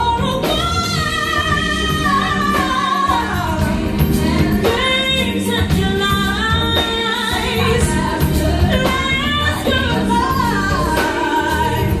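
A woman singing a contemporary R&B song live, with long held notes that slide in pitch, backed by a band with keyboards and a steady beat.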